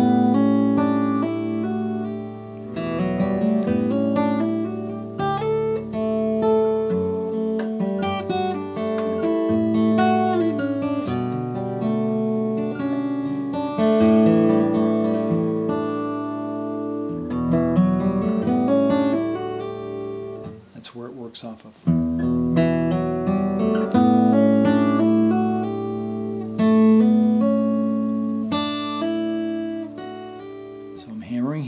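Acoustic guitar, capoed at the first fret, fingerpicked: a low open bass string keeps ringing under hammered-on and sliding treble notes. The playing breaks off for about a second roughly two-thirds of the way through, then starts again.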